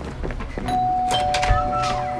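Doorbell chime ringing a ding-dong: a higher note, then a lower note about half a second later, both held steadily.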